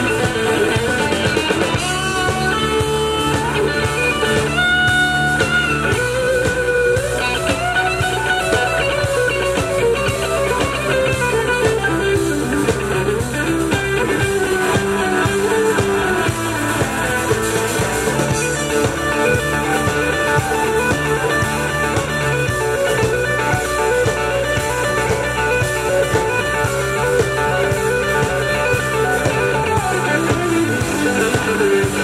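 Live rock band playing an instrumental passage led by an electric guitar on a Stratocaster-style instrument, over drum kit and bass guitar. The guitar holds and bends sustained notes.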